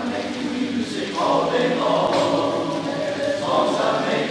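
All-male barbershop chorus singing a cappella in close harmony, holding sustained chords that swell a little about a second in.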